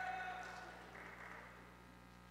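Faint audience noise in a large hall, dying away over the first second or so to steady quiet room tone with a low electrical hum.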